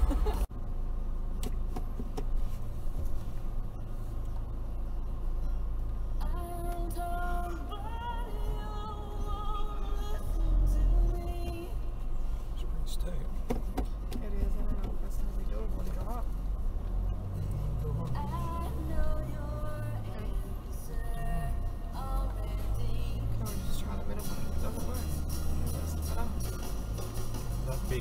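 Cabin rumble of a 2012 Toyota Prado 150's 3.0-litre turbo-diesel driving slowly through soft sand in low range, with music playing over it.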